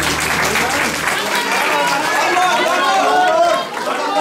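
A small audience clapping for about the first second and a half, then people chatting with a man's voice among them.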